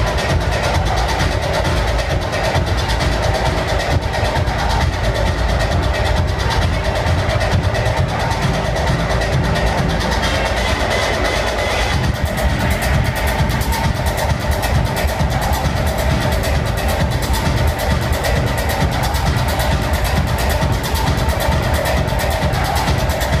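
Loud techno played over a large tent sound system, heard from within the crowd, with a heavy steady beat and deep bass. About halfway through, a crisper, busier high percussion pattern comes in over the beat.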